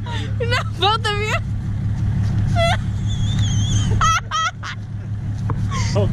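Straight-piped 6.7 L Cummins diesel idling steadily with a low drone, while people laugh and call out in short bursts over it.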